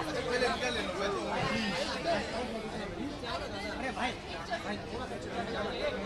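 Indistinct chatter: several people talking over one another at once, with no single voice clear.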